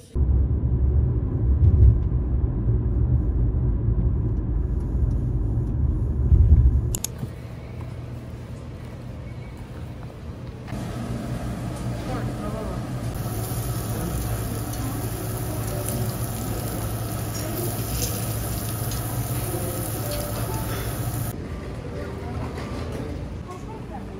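Loud, steady low road rumble heard inside a moving car for the first seven seconds, the loudest part. It cuts to quieter background ambience, with a steady hiss from about the middle until a few seconds before the end.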